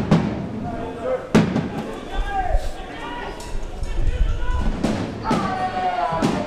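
Indistinct voices with a few sharp knocks, about a second and a half in and again near the end, over background music.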